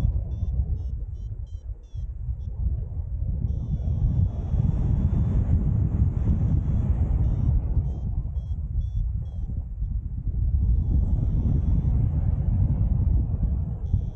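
Airflow buffeting the camera microphone of a paraglider in flight: a steady low rumble that swells and dips. Faint high variometer beeps come through in short quick runs near the start and again about two-thirds of the way through, with a longer warbling tone between.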